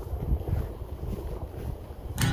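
Wind buffeting the microphone, an uneven low noise that rises and falls.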